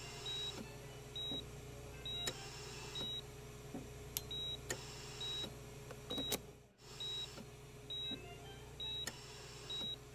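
Steady electronic beeping, a short high beep a little more often than once a second, typical of an operating-theatre patient monitor's pulse beep, over a low steady hum with a few clicks. The sound drops out briefly about two thirds of the way through.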